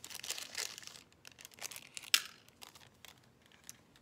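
A small translucent packet crinkling as it is handled. The crinkling is dense for the first second, then thins to scattered small clicks, with one sharp click about two seconds in.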